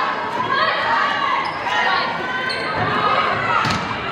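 Volleyball rally in a school gymnasium: players and spectators shouting and calling out throughout. A sharp smack of a hand hitting the ball comes near the end, echoing in the hall.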